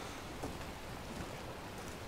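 Faint, steady rain ambience: a soft, even hiss.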